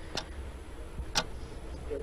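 Quiz-show countdown clock sound effect ticking once a second, two sharp ticks in all, marking the answer time running down. A faint steady low hum lies beneath.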